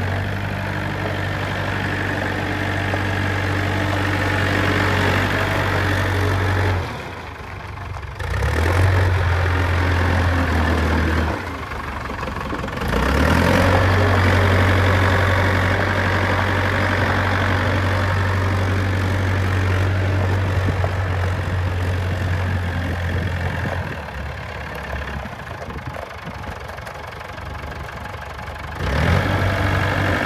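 Diesel engine of a 2001 JCB 520 telehandler running with a steady low hum as the machine is driven around. Its level drops away briefly about seven and twelve seconds in, and again for several seconds near the end.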